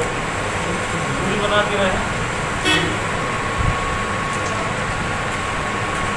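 Steady outdoor background noise of a gathering with faint voices, and a short toot about two and a half seconds in.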